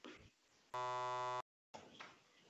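A steady, low electronic buzzing tone lasting about two-thirds of a second, starting and stopping abruptly, followed by a moment of dead silence.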